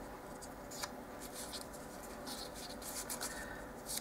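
Small piece of scored white paper being folded back and forth along its score lines between the fingertips: faint, irregular paper crinkles and rustles.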